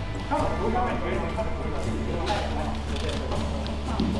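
Indistinct voices of several people talking quietly in the room, over a steady low background drone with soft background music.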